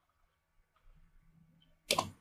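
Near silence, then a single sharp click near the end as a computer menu item is chosen.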